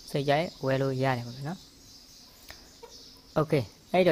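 A man talking in short low-pitched phrases, with a pause in the middle broken by a faint click about two and a half seconds in.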